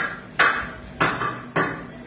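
Overhead surgical lamp head struck by hand three times, evenly spaced, each a sharp metallic knock with a short ring.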